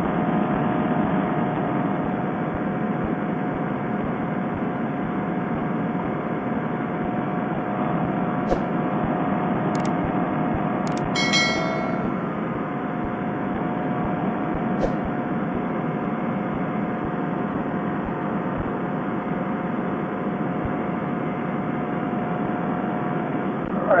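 Paramotor trike engine and propeller running steadily in cruise flight, a constant drone with a narrow, muffled quality as if picked up through a Bluetooth headset microphone. Near the middle, a few sharp clicks and a short chime come from a subscribe-button animation sound effect.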